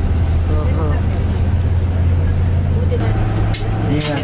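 Steady low drone of a coach's engine and road noise heard inside the moving bus, with faint talking early on; the drone shifts a little about three seconds in.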